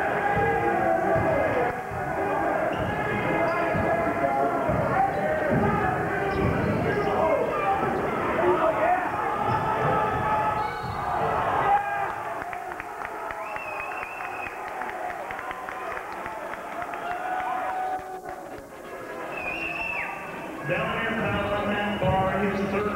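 Basketball game in a gym: a ball bouncing on the court amid a busy din of crowd voices, with short high squeaks. The crowd noise drops noticeably about halfway through and swells again near the end.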